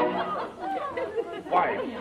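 Several women's voices chattering over one another in an old radio drama recording, right after a held sung note ends.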